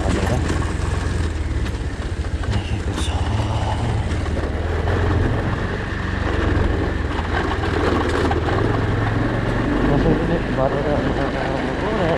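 Motorcycle engine running steadily at low revs while riding a rough, stony dirt track, with constant rattling and clatter from the bumpy surface.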